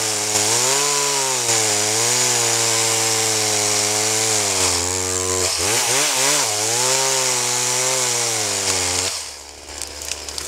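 Two-stroke chainsaw cutting through a conifer trunk at full throttle, its engine pitch sagging and recovering as the chain bites. Near the end it drops back to a low idle as the cut is finished.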